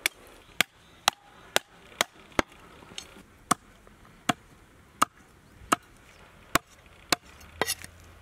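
Heavy meat cleaver chopping through goat ribs and bone onto a wooden chopping block: about a dozen sharp chops, about two a second at first, then slower and spaced out, with a quick flurry near the end.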